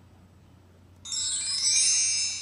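A chime sound effect for a presentation slide transition: a shimmer of many high tinkling tones that starts suddenly about a second in and fades away over about a second and a half. Before it there is only a faint low hum.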